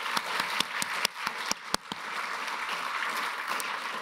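Audience applause: a steady patter of many hands clapping, with a few sharper single claps standing out close by.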